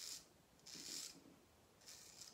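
Wade & Butcher 5/8 full hollow straight razor scraping through lathered stubble in short strokes: one ending as the sound begins, one about a second in, and another starting near the end.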